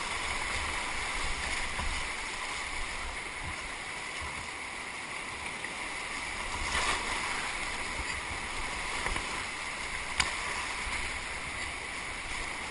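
Rushing whitewater of a flooded river running through rapids around a kayak, a steady wash of water noise. There is a brief louder surge about seven seconds in and a single sharp click about ten seconds in.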